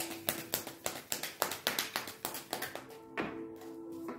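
A deck of tarot cards being shuffled by hand, with quick taps and flicks about four or five times a second that stop about three seconds in, followed by a brief rustle. Soft background music with long held notes plays underneath.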